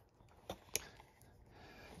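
Two faint, short clicks about a quarter of a second apart, from the buttons of a handheld RC transmitter being pressed to step the model boat's lights through their modes.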